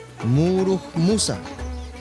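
A man's voice speaking in the Toda dialect of Seediq, with long, level-pitched, drawn-out syllables.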